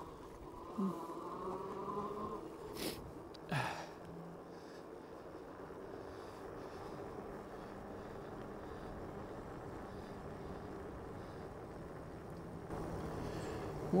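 Dual electric hub motors of a Philodo H8 all-wheel-drive e-bike whining under power while riding on a paved road, a buzzing whine strongest in the first couple of seconds that settles into a steady low hum over faint tyre noise. Two brief sharp sounds about three seconds in.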